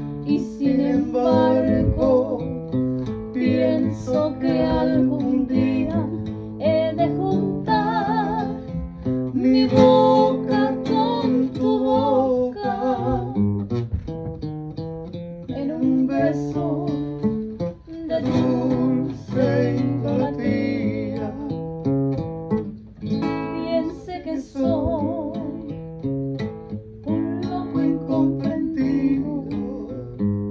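An Ecuadorian pasillo sung to acoustic guitar: strummed and plucked guitar chords under a sung melody with a strong vibrato.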